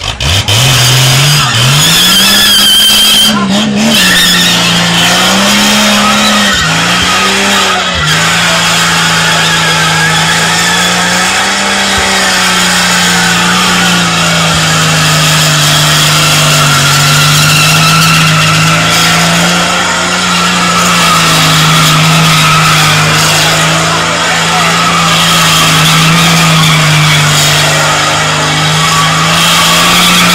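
A ute doing a burnout: the engine is revved up hard in the first couple of seconds and then held at high revs, wavering slightly, while the spinning tyres squeal against the track. Very loud throughout.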